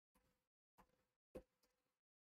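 Near silence, broken by three faint computer keyboard keystroke clicks, each followed by a brief faint hum; the loudest comes near the end.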